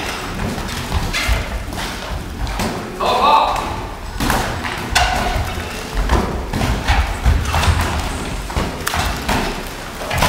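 Boxing sparring: a run of irregular thuds from gloved punches landing and boxers' feet moving on the ring canvas, several a second at times.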